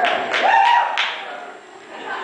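Voices in a hall, with one short vocal call about half a second in and a few sharp taps around it, then quieter room sound.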